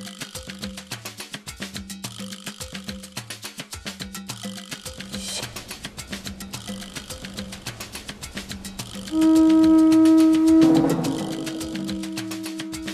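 Latin music with a fast, steady percussion beat. About nine seconds in, a loud held note with a clear pitch comes in over the rhythm and is the loudest sound, then fades back to a softer level.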